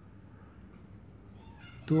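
Quiet room tone with a low hum, then a man's voice starts right at the end.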